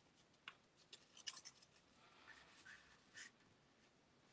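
Near silence with a few faint rustles and taps of paper: a vellum cut-out being slid into place on card stock by hand.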